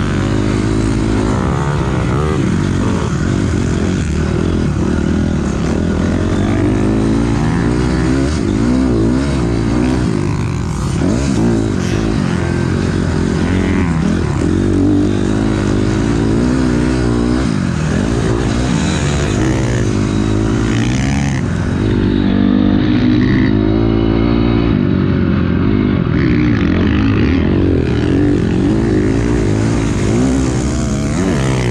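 2006 Honda CRF250R's four-stroke single-cylinder engine being ridden hard around a motocross track, its pitch rising and falling again and again with the throttle and gear changes.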